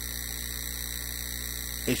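Steady electrical mains hum in the recording: a low, even hum with its overtones and faint hiss, unchanging throughout.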